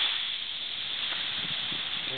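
Gentle surf washing on a sandy shore: a steady hiss of water at the water's edge that eases off a moment in.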